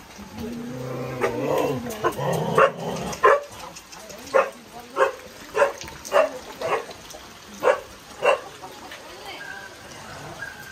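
A dog barking, a run of about eight short barks roughly half a second apart, after a few seconds of voices.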